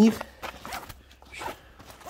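A zipper on a fabric fishing tackle bag being pulled, with soft rustling as the bag is handled.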